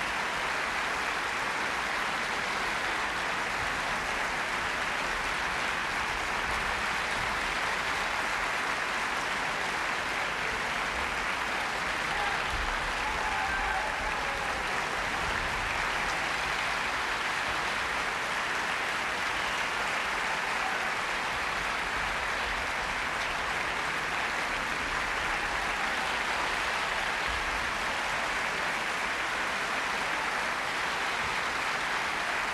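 Large opera-house audience applauding steadily through the curtain calls.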